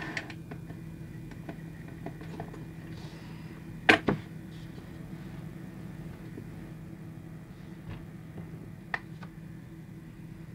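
Steady low hum of a motorised display turntable, with sharp hard clicks from handling: two close together about four seconds in and a single one near nine seconds.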